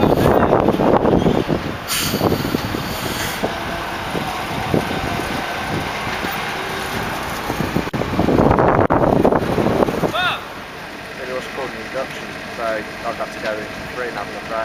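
Low-loader lorry's diesel engine running while it moves a railway carriage, with a short hiss of air about two seconds in. The noise drops sharply about ten seconds in, leaving voices.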